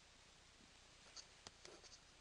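Near silence, then a few faint soft clicks and a brief rustle in the second half as Pokémon trading cards are slid off a hand-held stack one over another.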